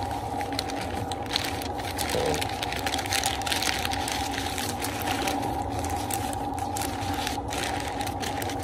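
Butcher paper and aluminium foil crinkling and rustling in short crackles as hands fold and press them around a brisket, over a steady mechanical hum.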